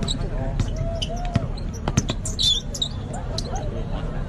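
A basketball bouncing on an outdoor concrete court, a few sharp bounces in the first two seconds, with spectators' voices underneath.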